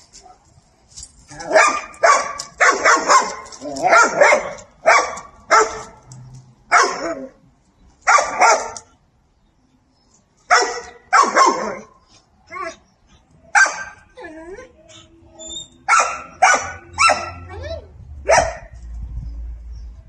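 Dog barking repeatedly, in short loud barks that come in quick clusters with pauses between them.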